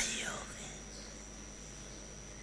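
A woman's amplified voice through a stage microphone, the last word fading out in the hall's reverberation within about half a second, then a pause with only a steady hum and a faint constant high whine from the sound system.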